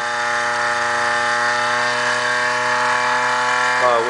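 Pulse motor running: a magnet rotor spinning at steady speed over a multi-layer toroidal coil driven by its pulse circuit, giving an even, unchanging hum with a whine of many overtones above it.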